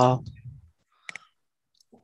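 A man's voice trailing off at the end of a word, then a quick pair of small clicks about a second in.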